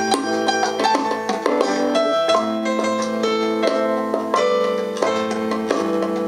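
A live band jamming on electric bass, electric guitar and keyboard: quick plucked notes over held keyboard chords.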